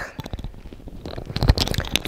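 Handling noise on a clip-on lavalier mic: fabric rustling and scraping against the mic, with a dull thump about one and a half seconds in.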